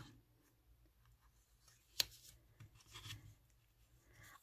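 Very faint handling of floss by hands working it around a small card, soft rubbing with one sharp click about halfway through.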